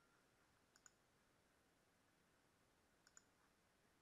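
Near silence broken by two faint computer mouse clicks, each a quick double tick of press and release, about a second in and again about three seconds in.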